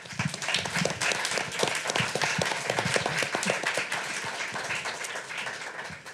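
Audience applauding: many hands clapping, starting suddenly and tapering off near the end.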